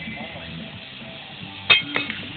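A thrown steel horseshoe lands in the sand pit and strikes metal once, about three-quarters of the way through, with a sharp clank and a short ring. Music plays underneath.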